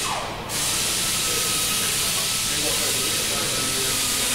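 A steady hiss of rushing air. It drops out briefly right at the start and comes back about half a second in.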